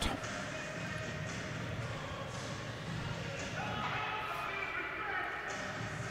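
Ice rink arena ambience during a stoppage in play: steady background noise of a large hall with faint, indistinct voices.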